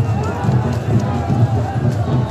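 Dense crowd of men's voices, many overlapping at once, loud and continuous.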